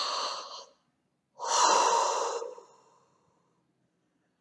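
A person's deep breath, heard as two loud pitchless breaths: a short one at the start, then a longer, louder breath out about a second and a half in, blown over an open glass jar.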